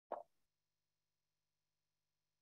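A single brief pop just after the start, then near silence.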